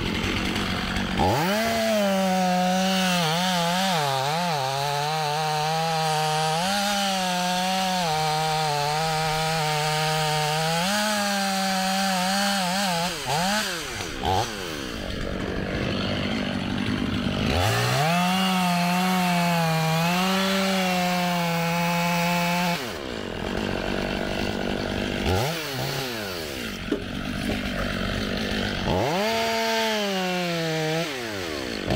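Stihl chainsaw cutting through a pine trunk: the engine revs up to full throttle in two long bursts, its pitch sagging and wavering as the chain bites into the wood, dropping back toward idle between cuts and revving up again near the end.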